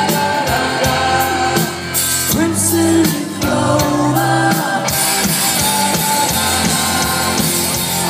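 Rock band playing live through a festival sound system, heard from the crowd: electric guitars over a drum kit, with the cymbals coming in harder and in a steady beat about five seconds in.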